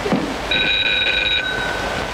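A bell rings for about a second as a few clear high tones, the lowest of which lingers a little longer, over the steady hiss of an old film soundtrack.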